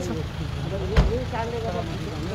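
An SUV's engine running low as the vehicle rolls slowly past close by, with one sharp knock about a second in.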